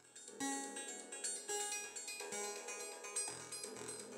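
Eurorack modular synthesizer playing two random oscillator voices at once: an irregular stream of pitched synth notes, several overlapping, each ringing on.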